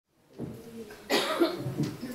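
A person coughing, a harsh burst starting about a second in.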